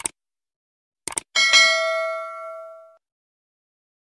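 Subscribe-button animation sound effect: a short click, then a quick double click about a second in, then a bright bell ding that rings out and fades over about a second and a half.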